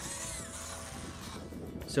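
Cordless drill boring through the plastic wall of a milk crate for about a second and a half, fading out before the end, over background music.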